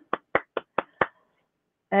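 One person clapping their hands, about five claps at a steady pace that stop about a second in, heard over a video-call connection.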